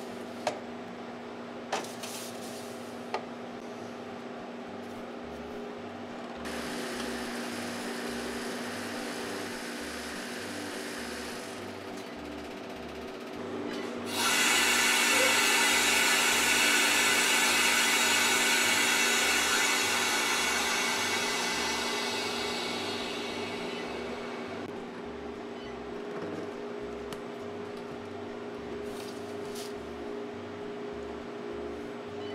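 Air hissing into a Harvest Right freeze dryer's vacuum chamber as the vacuum is released at the end of a drying cycle. The hiss starts suddenly about halfway through and fades away over about ten seconds. Before it come a few sharp clicks of a metal tray sliding onto the chamber shelves, over a steady hum.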